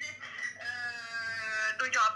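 A single long, high-pitched call held for a little over a second, nearly level in pitch and dipping slightly at its end, with snatches of speech around it.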